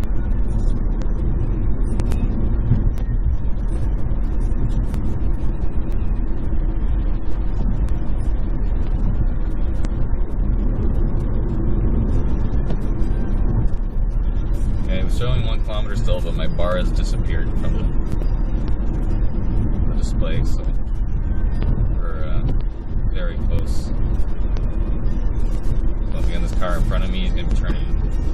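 Road and tyre noise inside the cabin of a 2011 Chevrolet Volt driving on battery power, with the gas range-extender engine not yet running: a steady low rumble.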